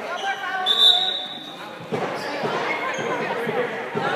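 A short, high whistle blast about a second in, likely the referee's, then a basketball bouncing several times on the hardwood gym floor in the second half, with voices in the gym.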